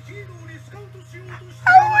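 A woman's quiet, muffled giggling held back behind her hand: short pitched pulses, about four a second. Faint background music plays under it. A loud exclaimed word breaks in near the end.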